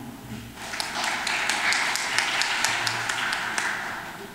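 Audience applauding: a round of many separate hand claps that starts about half a second in and fades away near the end.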